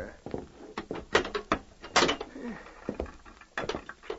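Radio-drama sound effect of a jail cell door being shut: a run of knocks and clanks, the loudest about two seconds in.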